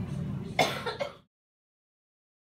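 A low steady hum, then a short throat-clearing sound from a person about half a second in. The sound cuts off to dead silence a little after a second.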